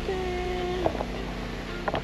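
Background music, with a held note that ends about a second in.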